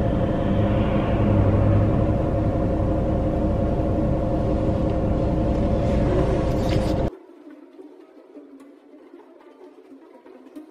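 Steady car-cabin road and engine noise with a low rumble and a constant hum while driving, cutting off abruptly about seven seconds in and giving way to faint music.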